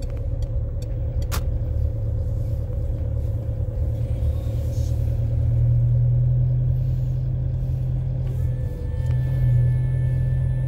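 Low steady rumble of a slowly moving car, with a faint steady whine above it. A couple of sharp clicks come about a second in.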